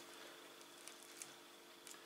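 Near silence: a fork mashing cottage cheese and banana in a plate, with a few faint soft ticks of the fork on the plate.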